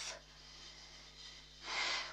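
Mostly quiet, then a short breath drawn in sharply near the end.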